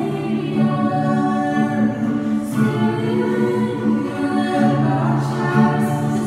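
Several voices singing a slow worship song together in long held notes, accompanied by a strummed acoustic guitar and ukulele.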